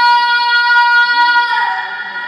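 A girl's solo singing voice holding one long, steady high note over musical accompaniment, ending about one and a half seconds in as the accompaniment fades away.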